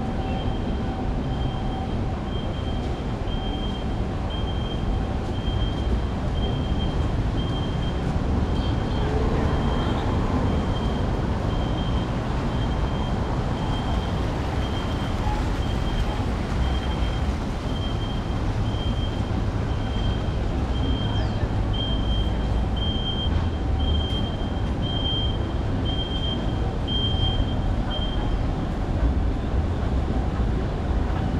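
Steady outdoor city traffic noise with a low rumble. Over it, a high-pitched beep repeats about twice a second and stops shortly before the end.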